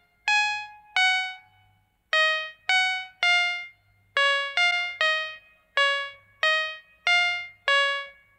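A simple tune played one note at a time on a bright plucked or keyboard instrument. There are about a dozen short notes, each ringing briefly and dying away, with a short pause about two seconds in.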